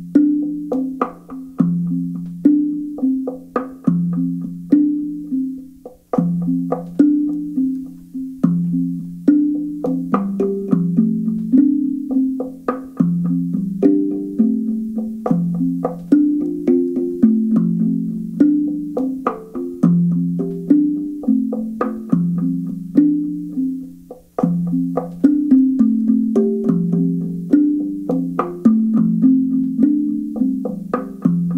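Wooden log drum (slit tongue drum) played with two mallets: a steady, repeating melodic pattern of low, woody pitched notes, each struck tongue ringing briefly.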